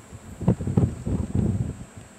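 Wind buffeting the camera microphone in loud, irregular gusts, a low rumble from about half a second in until near the end.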